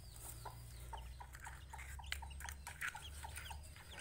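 Newly hatched chicks peeping faintly: a steady run of short, high chirps, about three to four a second.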